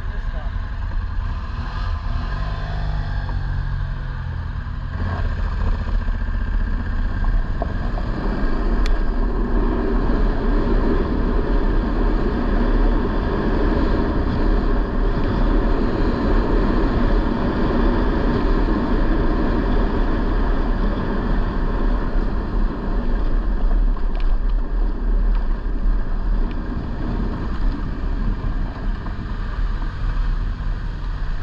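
Off-road vehicle running along a dirt road, its engine rumble mixed with road and wind noise, growing louder about six to eight seconds in.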